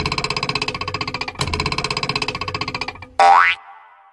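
Outro jingle: bright music with a rapid pulsing beat in two phrases, fading out about three seconds in. It ends with a short, loud sound effect that rises steeply in pitch.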